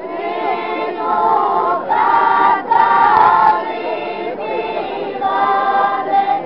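A folk ensemble's group of singers, women's voices leading, singing a traditional song unaccompanied in long held notes that bend slightly in pitch, broken into short phrases.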